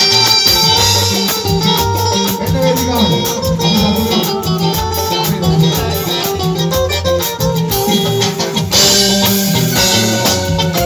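Live band playing upbeat music, the drum kit and cymbals keeping a steady beat under bass and melody, with a brighter crash about nine seconds in.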